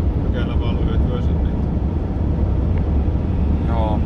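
Steady low drone of engine and road noise inside the cabin of a van being driven.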